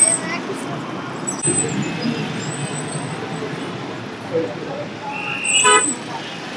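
Busy street traffic running steadily, with a vehicle horn sounding once, briefly and loudly, near the end.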